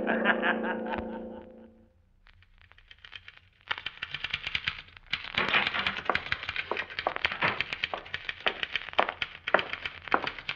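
A man laughs over a held music chord that fades out within about two seconds. After a short silence, a manual typewriter starts clacking rapidly, several keystrokes a second, as a radio sound effect.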